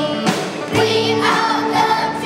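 A children's choir singing a rock-and-roll song with a live band behind them, with a drum beat about once a second.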